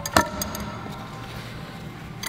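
A rubber-coated gym weight plate being loaded onto a metal bar. It gives one sharp clank with a brief ring just after the start, then a lighter click.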